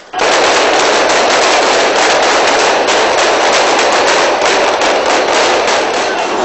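Rapid gunfire, the shots running together into a dense, continuous crackle that starts suddenly and lasts nearly six seconds.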